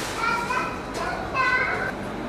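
Children's high-pitched voices calling out, twice in short bursts, over a steady background hiss.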